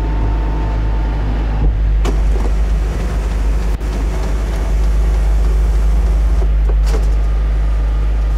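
Honda CRX del Sol's 1.6-litre four-cylinder engine idling steadily while its motorised TransTop roof mechanism lifts the boot lid, with sharp clicks about two and four seconds in.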